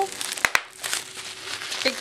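Large-bubble plastic bubble wrap being handled and crinkled, with two sharp pops in quick succession about half a second in as bubbles burst.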